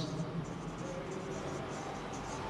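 Marker pen writing on a whiteboard: a quick run of short, scratchy strokes, several a second.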